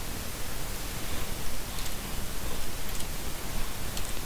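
Steady hiss of background noise from the recording's microphone, with nothing else distinct.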